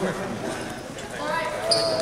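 Basketball dribbled on a hardwood gym floor, the bounces sounding among voices in the hall. A short high squeak comes near the end.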